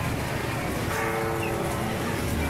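A beiguan processional band playing, with held ringing notes most prominent about a second in, over the steady din of a street procession.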